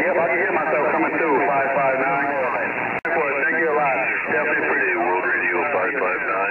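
Men's voices talking over a CB radio receiver on the 11-metre band, the sound cut off above about 3 kHz, with a brief drop-out about three seconds in.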